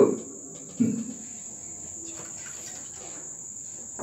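A steady high-pitched whine that holds one pitch without a break, with a short low sound about a second in.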